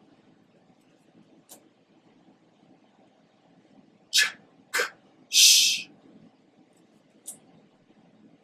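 A man's voice saying the three sounds of the phonogram "ch" as bare consonants, about four seconds in: a short "ch", a short "k", then a longer hissing "sh". Otherwise the room is quiet apart from two faint clicks.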